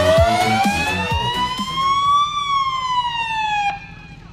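Ecto-1 siren wailing in a slow glide: falling, then rising for about two seconds and falling again, before it cuts off suddenly near the end. Music with a beat plays under it during the first half.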